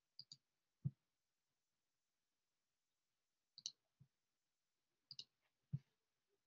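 Clicks from someone working a computer, heard in near silence: three small groups of two or three clicks each, a few seconds apart.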